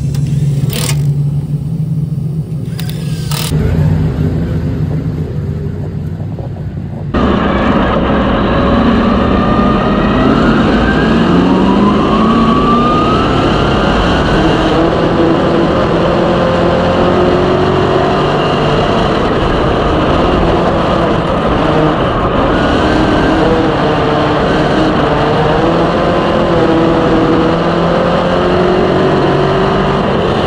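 Dirt modified race car's V8 engine heard from inside the cockpit, running loud and steady on track, with its pitch rising as it accelerates on the straights. Before that, in the first few seconds, a cordless tool at the wheel gives a couple of short bursts.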